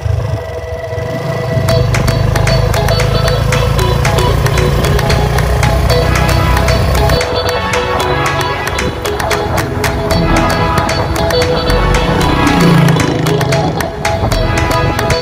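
Background music with a steady beat and strong bass, fading in over the first couple of seconds.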